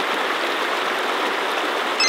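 Steady rushing of a shallow creek flowing over rocks.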